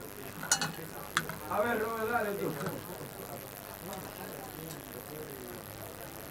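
Two sharp clicks about half a second apart, then about a second of a faint, indistinct voice in the background, over a low steady background hiss.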